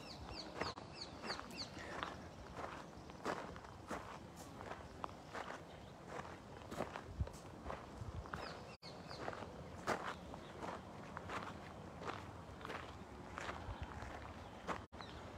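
Footsteps on gravelly sand at a steady walking pace, about two steps a second. A bird gives a quick run of short, high, falling chirps near the start and again about nine seconds in.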